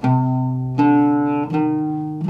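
Eleven-string oud plucked: three single notes, each dying away before the next, played to show how the minor interval sounds.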